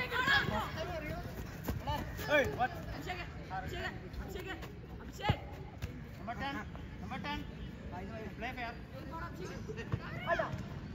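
Young players' voices calling and shouting across an open football pitch, a string of short shouts over a low background hubbub, with one sharp thud a little after five seconds in.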